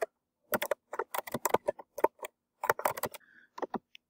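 Computer keyboard typing in several quick bursts of keystrokes with short pauses between.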